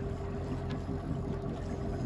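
Boat motor running steadily: a continuous low hum with a steady higher tone above it.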